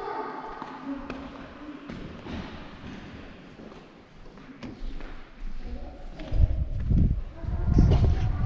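Footsteps and faint, indistinct voices in a large room, then from about six seconds in a loud low wind rumble on the microphone outdoors.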